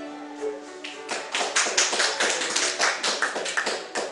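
The last held note of a fiddle tune dies away in the first second, then a small audience claps for about three seconds.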